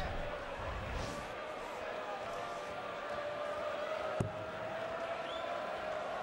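Low, steady murmur of an arena crowd, with one sharp knock of a steel-tip dart striking the bristle dartboard about four seconds in.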